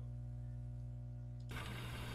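Steady low electrical hum on the call's audio line, with a hiss coming in about one and a half seconds in.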